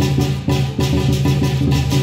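Music with a fast, steady beat: sharp strikes about four times a second over a continuous low tone.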